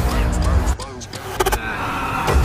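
Trailer sound design and score: a deep bass boom rumbling under tense music, with a couple of sharp clicking hits about a second and a half in.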